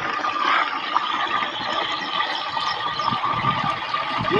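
Liquid poured in a steady stream from a plastic bucket into a sprayer tank, splashing as it fills.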